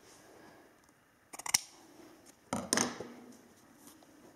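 A short, crisp rip of athletic tape being torn off the roll, about one and a half seconds in.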